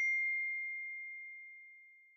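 A high chime from a logo sting, struck once and ringing as one clear tone that fades away over about two seconds.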